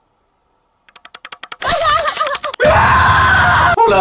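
A horror jump scare: silence, then a fast run of clicks growing louder, then a loud wavering cry breaking into a scream that cuts off abruptly near the end.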